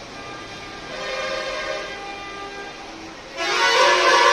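Brass temple bells ringing, several sustained ringing tones overlapping. About three and a half seconds in, the ringing turns suddenly much louder and denser.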